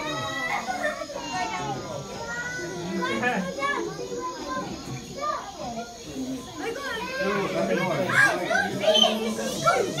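Many children's voices talking and calling out over one another, a busy crowd of young onlookers, getting louder near the end.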